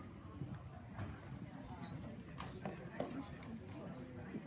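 A horse's hoofbeats on soft arena dirt as it lopes, a string of strikes with the sharpest about three seconds in, over a murmur of people talking.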